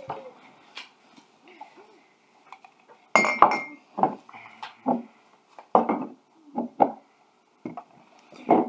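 Ceramic coffee mugs clinking and knocking against each other and on a wooden table as they are set down upside down and shuffled. A quick series of knocks begins about three seconds in.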